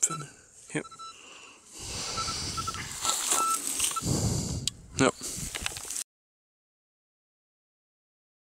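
Rustling and handling noise close to the microphone while a metal detector gives short, uneven beeps at one steady pitch. The sound cuts off abruptly to silence about six seconds in.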